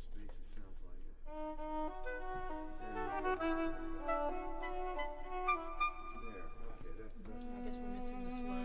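Bowed string instruments playing a slow line of held notes that step up and down in pitch, with a lower sustained note entering near the end.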